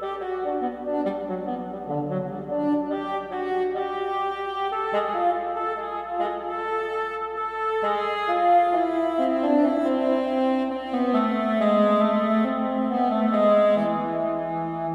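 Sampled heckelphone (Vienna Symphonic Library), a low double-reed instrument, playing a solo melodic line in a Baroque style, with notes in quick succession that climb higher after the first few seconds.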